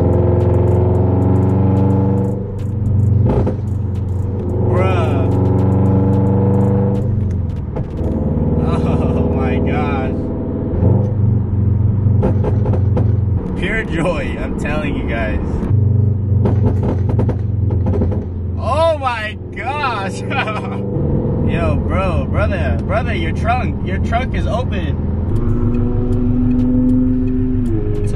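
Scion FR-S's 2.0-litre flat-four engine heard from inside the cabin through a Tomei titanium header, joint pipe and muffler with a pops-and-bangs tune, droning steadily in long stretches of a few seconds, with the engine note changing between them.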